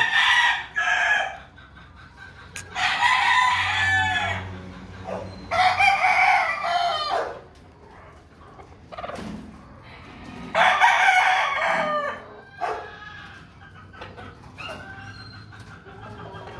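Gamecock roosters crowing in turn: four loud crows, each about one and a half to two seconds long, a few seconds apart, with fainter calls between them.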